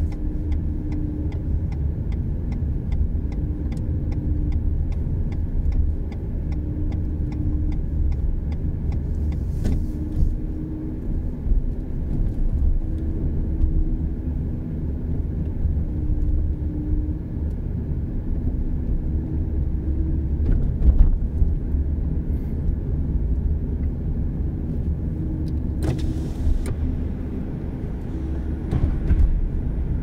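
Steady in-cabin road and engine noise of a car driving at low city speed. For the first eight or nine seconds, a turn signal ticks about twice a second.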